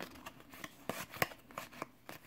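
Glossy Topps trading cards being thumbed through one by one in the hand: a series of short, crisp card clicks and slides, most of them in the second half.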